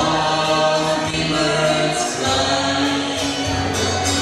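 A woman and a man singing a song together, with acoustic guitar and keyboard accompaniment.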